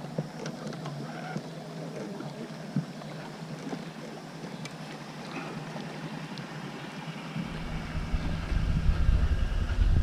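Quiet ambience aboard a small fishing boat on a lake, with a few light clicks and knocks. About seven seconds in, a low rumble comes in and grows louder.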